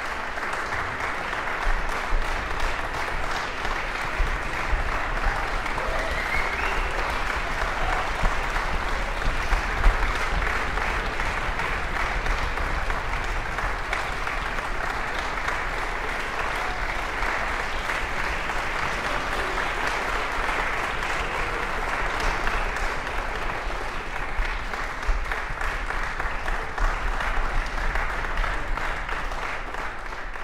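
Audience applauding steadily in a concert hall, a dense clapping that tails off at the very end.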